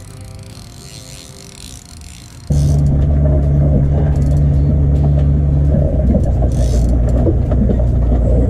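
Boat engine running with a loud, steady, low rumble that starts abruptly about two and a half seconds in; before that only a quieter, fainter hum.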